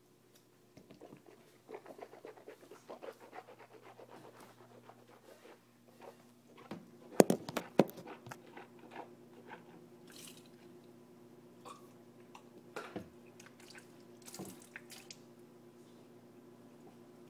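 A person gulping from a bottle, with a run of quick wet swallowing and mouth sounds. About seven seconds in come a few loud sharp knocks, the loudest sounds here, followed by scattered small clicks and handling noises.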